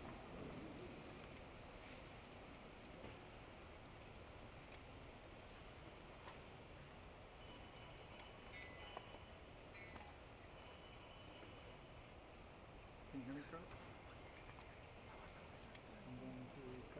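Near silence: the room tone of a large hall, with a few faint scattered clicks and a brief faint murmur about thirteen seconds in.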